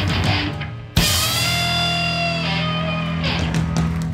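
Hardcore punk band playing live with distorted electric guitar and drums; after a brief stop, the full band hits a chord about a second in and lets it ring out, the ending of a song.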